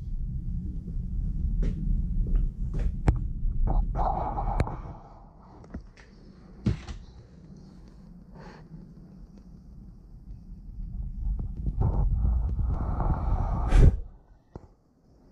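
Low rumble and scattered knocks from a handheld camera being moved about. It is loud for the first few seconds, quiet in the middle, and swells again near the end, closing on a sharp knock.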